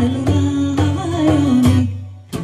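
A woman singing a Middle Eastern folk melody in long, held notes, accompanied by a strummed acoustic guitar and a hand drum struck in a steady beat. The phrase dies away at the very end.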